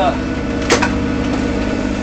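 Sailboat's inboard diesel engine running steadily under way, heard from inside the cabin, with a single sharp knock a little under a second in.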